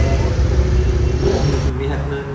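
A large motorcycle's engine running with a deep low rumble as the bike pulls away. The rumble stops abruptly near the end.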